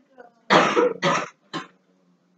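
A person coughing three times in quick succession, each cough shorter than the one before.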